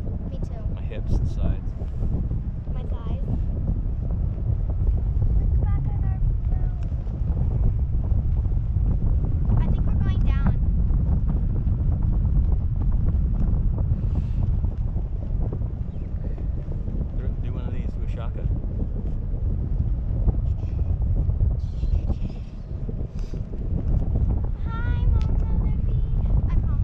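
Wind buffeting the microphone of a camera on a parasail tow bar, moving over the sea, as a steady low rumble, with short bursts of voices now and then.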